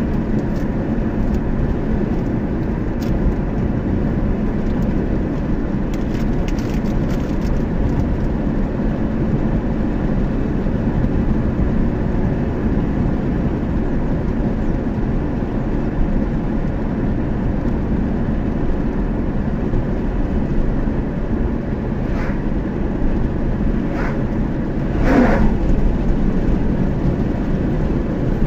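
Steady road noise of a car cruising at constant speed, engine and tyres heard from inside the cabin, with a few faint clicks and a brief pitched sound near the end.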